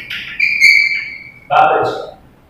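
Chalk squeaking on a blackboard while writing: a high, steady squeal lasting about a second, followed by a brief burst of a man's voice near the end.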